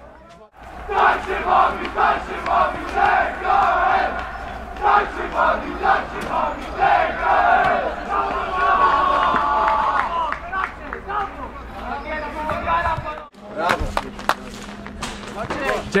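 A team of footballers chanting and shouting together in celebration of a win, first in rhythmic shouts about two a second, then a longer held shout. It cuts off suddenly near the end, leaving quieter outdoor noise.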